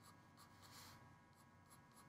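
Very faint scratching of a graphite pencil making light strokes on drawing paper.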